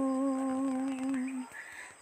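A woman's solo voice holding a long, steady sung note at the end of a phrase of a Malayalam devotional song, with no instrument audible. The note ends about a second and a half in, followed by a short quiet pause before the next phrase.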